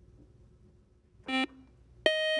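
Faint room tone, broken about a second in by one short electronic beep: a quiz-show contestant's buzzer signalling a buzz-in.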